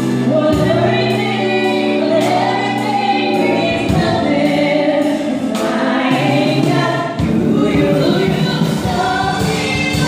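A man and a woman singing a pop ballad duet into microphones, over a Kurzweil stage keyboard whose sustained bass notes change chord a few times.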